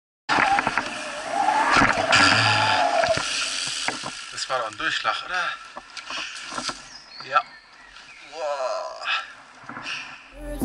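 Action-camera sound of a mountain bike riding a dirt trail: tyres rolling over dirt with wind on the microphone and knocks and rattles from the bike, with a sharp knock about seven seconds in. A voice calls out over it.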